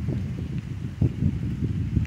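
Wind buffeting the microphone: a low, uneven rumble that swells and dips, with a couple of brief bumps.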